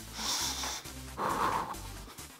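A woman breathing hard while running in place: two forceful breaths, a hissy one at the start and a duller one about a second later. Background music with a steady bass plays underneath.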